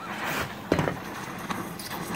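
Oxy-fuel torch flame hissing steadily as it heats steel bars, with a sharp knock a little under a second in and a lighter one about a second and a half in.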